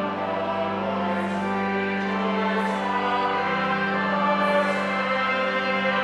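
A choir singing with organ accompaniment over a long-held low note, the sung consonants hissing briefly a few times.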